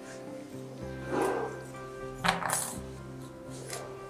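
Background music playing steadily, over which thin sheet-metal puzzle parts rattle and clink as they are handled, with short bursts about a second in and, loudest, just after two seconds.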